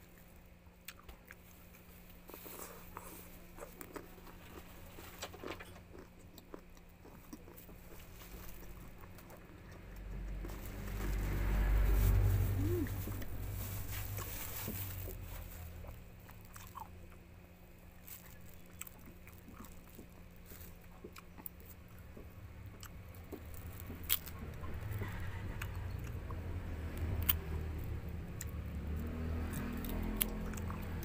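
Close-up eating sounds of a person biting and chewing rambutan fruit, with small wet mouth clicks. There is a louder, lower stretch in the middle, and sharper clicks near the end.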